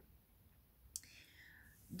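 Near silence in a pause of speech, broken about a second in by a soft mouth click and a short, quiet breath.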